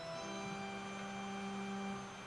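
Soft sustained organ notes: a held note ends at the start and a lower one begins a moment later and is held steady.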